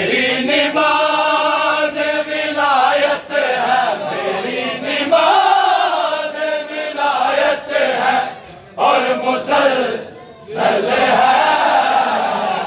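A crowd of men chanting a noha (Shia lament) together in long, held lines, loud throughout; the chant breaks off briefly twice near the end.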